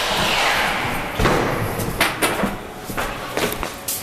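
A series of irregular thumps and knocks, about half a dozen from a second in to the end. The first second is a rushing noise.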